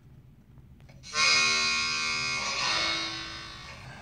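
A held harmonica chord starts suddenly about a second in, shifts to a second chord partway through and fades out toward the end.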